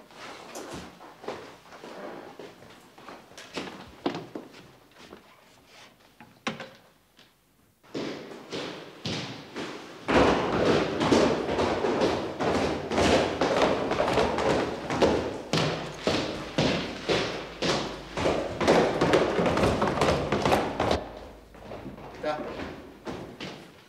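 Footsteps of hobnailed boots on a stairwell: a steady tread of heavy steps, faint at first and much louder from about ten seconds in.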